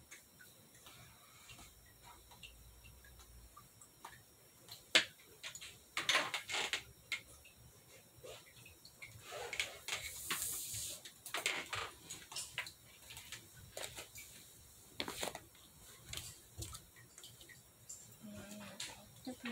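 Paper rustling and crinkling as small hands fold and handle a piece of paper, in short irregular bursts with scattered light taps, busiest about halfway through.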